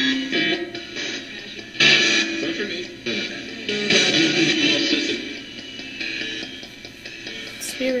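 RadioShack 12-150 radio used as a ghost box, sweeping through stations and played through a guitar amplifier and pedal. It gives choppy snippets of music and voices that jump abruptly every second or so, sounding bad.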